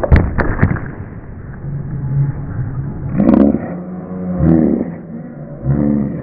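Scooter wheels rolling on skatepark ramps with a steady low rumble, and a few sharp clacks of the scooter hitting the ramp in the first second. The audio is dull and muffled, as recorded by an action camera.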